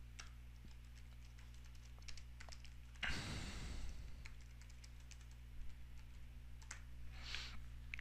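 Faint typing on a computer keyboard: scattered key clicks over a steady low hum.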